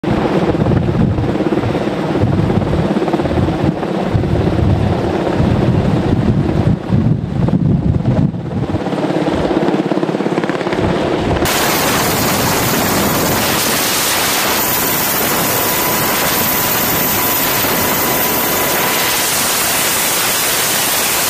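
UH-60 Black Hawk helicopter hovering during a cable hoist, its rotor beat and rotor wash buffeting the microphone with an uneven low rumble. About eleven seconds in, the sound cuts abruptly to a steady loud hiss of rotor wind and engine noise heard at the open cabin door, with a faint steady whine.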